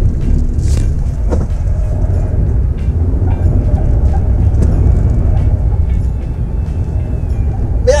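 Cabin noise of a Suzuki Ignis with its 1.2 L four-cylinder engine, driven hard through tight circles: a loud, steady low rumble of engine and road, with occasional knocks from loose filming gear banging about inside the car.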